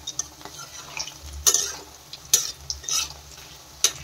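Masala-coated cauliflower and capsicum sizzling in hot oil in a kadai, with a metal spatula scraping and knocking against the pan several times as it is stirred.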